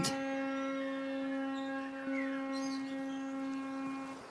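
A steady, even-pitched hum with a stack of overtones.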